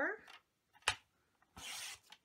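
Sliding paper-trimmer blade cutting a sheet of double-sided pattern paper: a single click a little under a second in, then a short rasp as the blade slices down through the paper near the end.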